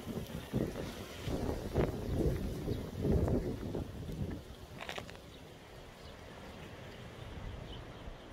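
Wind buffeting the microphone in gusts, a low rumble that is strongest in the first half and eases off after about four and a half seconds. A short tick sounds near the middle.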